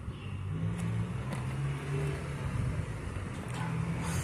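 A car engine running at low speed, a steady low hum that rises and falls slightly in pitch.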